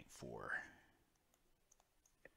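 A man's voice trails off in the first half second, then faint, scattered clicks of a stylus tapping on a touchscreen as digits are handwritten.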